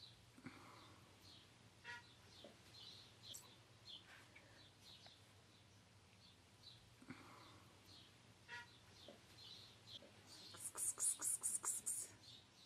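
Faint small birds chirping repeatedly in short calls. Near the end comes a louder, rapid run of about a dozen sharp ticks lasting about a second and a half.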